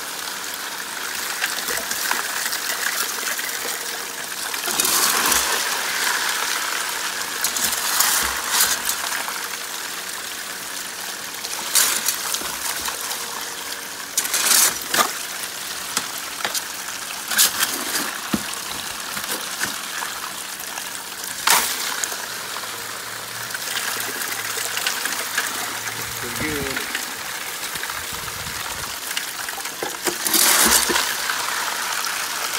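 Water gushing steadily from a pump-fed pipe onto gravel in a homemade five-gallon-bucket highbanker, with a sharp knock every few seconds.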